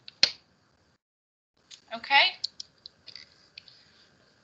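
Computer mouse clicks over a video-call microphone: one sharp click just after the start, then several lighter clicks in the last two seconds around a short spoken "OK".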